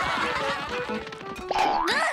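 Cartoon sound effects over music: a busy clamour as a crowd rushes by, then a springy cartoon boing that rises and falls in pitch about a second and a half in.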